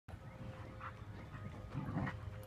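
Two huskies play-fighting, with faint short dog vocalizations about a second in and again near the end, over a low steady rumble.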